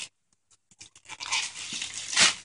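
Gift wrapping paper crinkling and rustling as a child's hands work at a wrapped present. After about half a second of silence it starts as scattered crackles and becomes a denser rustle near the end.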